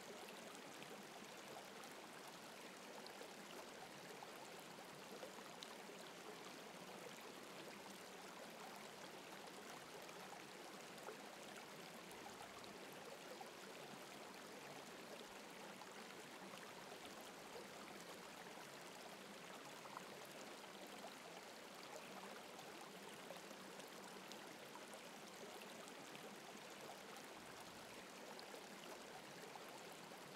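Faint, steady running-water ambience like a gentle stream, with no other sounds.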